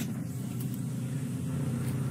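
Steady, even drone of construction machinery running at a worksite, a low hum without change.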